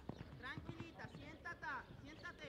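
Hoofbeats of a horse cantering on sand arena footing, a run of dull thuds, with people talking in the background.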